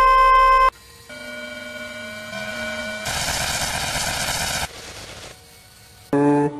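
Harsh electronic horror-clip sound: a loud steady beep-like tone that cuts off suddenly just under a second in, then quieter tones that step in pitch, and a stretch of loud static hiss with a tone running through it that drops away near the end.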